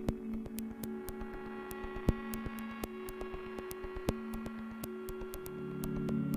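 Electronic glitch music in a sparse passage: a steady humming drone of held tones, scattered with small irregular clicks and a louder click about every two seconds. A deeper drone swells in near the end.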